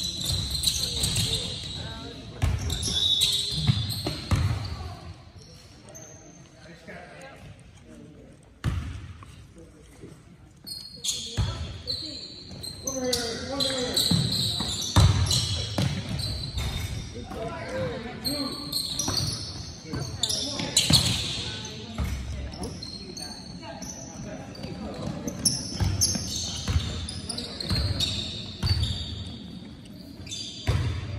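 A basketball bouncing on a hardwood gym floor, with sneakers squeaking, while spectators and players talk and call out, all echoing in a large hall. The sounds come in bursts, with a quieter stretch about a third of the way in.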